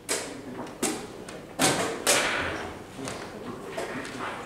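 Wooden chess pieces knocked down on the board and the chess clock pressed in quick blitz play: four sharp knocks in the first two seconds, the last two the loudest.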